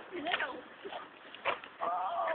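A short rising vocal cry about a quarter of a second in and a sharp knock about a second and a half in, then a long, steady held call that starts near the end.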